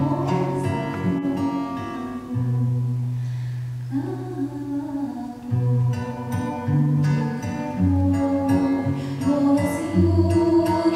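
A woman singing a song into a microphone over instrumental accompaniment with long held bass notes. Her voice thins out briefly about three seconds in and comes back with an upward glide about a second later.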